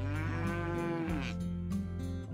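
A calf mooing once, a single call of just over a second that rises and then falls in pitch, over soft background guitar music.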